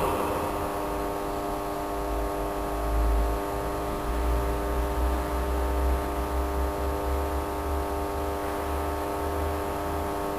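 Steady electrical mains hum and buzz, a single unchanging tone with many even overtones, over a low uneven rumble.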